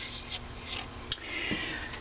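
Faint scratching and rubbing of something writing a letter on the metal pole piece of a magnet charger, with a small click about a second in.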